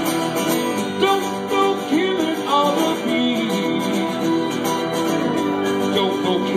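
Live acoustic guitar and electronic keyboard playing a song together, with the guitar strummed and the keyboard holding sustained notes.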